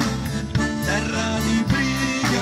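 A live folk-rock band playing: a drum kit keeping a steady beat under an electric bass line and a diatonic button accordion (organetto).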